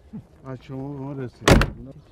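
A vehicle door slams shut with one sharp bang about one and a half seconds in, the loudest sound here, after a few words from a man.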